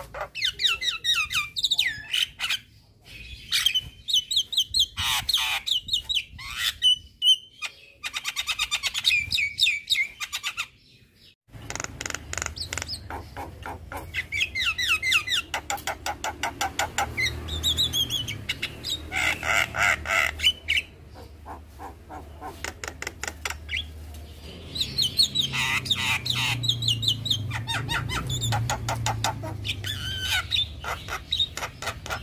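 Young Javan myna singing a fast, chattering song of rapid repeated notes and trills, delivered in bursts with short pauses. From about eleven seconds in, a low hum runs underneath.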